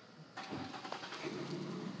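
A vehicle running with a faint, steady hum that comes in about a third of a second in.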